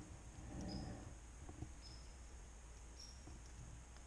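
Quiet wet woodland: three short, faint high chirps about a second apart, with a soft rustle of movement near the start and a couple of faint clicks.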